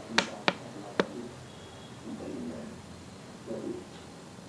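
Three sharp clicks in quick succession, the last a little farther apart than the first two.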